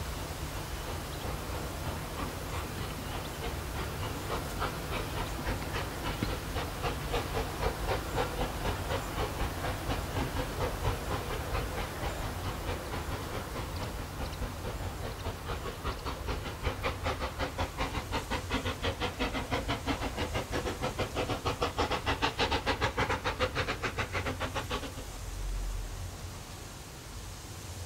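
Steam tank locomotive No. 6 Renshaw working a goods train: a steady rhythm of exhaust chuffs that grows louder as the engine approaches, loudest near the end, then breaks off suddenly.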